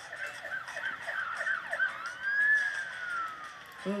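Police car siren in a fast yelp, about four sweeps a second, that changes about two seconds in to a single long wail, rising and then falling away.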